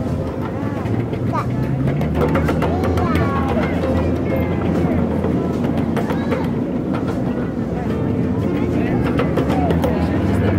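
Ride-on train moving steadily, with a continuous low rumble and frequent small clatters and rattles from the cars. Voices and music carry faintly in the background.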